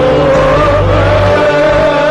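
Live gospel worship music: a voice holds one long, slightly wavering note over keyboard and bass.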